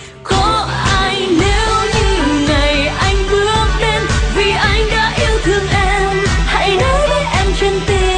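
Vietnamese pop song: a female singer's voice over a band with bass guitar and a steady beat. The music dips briefly right at the start, then comes straight back in.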